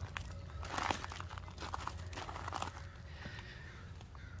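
Faint crunching and rustling of close movement over gritty garden soil and tomato foliage, a cluster of small crackles lasting about two seconds, over a faint low rumble.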